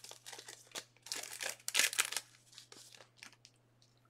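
Plastic packaging crinkling and rustling as it is handled, in irregular bursts that thin out to a few small clicks in the last second or so, over a faint steady low hum.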